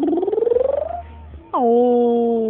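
A high voice squealing: one long rising squeal, then a held steady note starting about one and a half seconds in.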